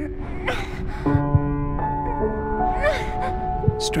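Slow score music of held notes, over which a young girl gasps and whimpers in fright, with breathy gasps about half a second in, at one second and again near three seconds.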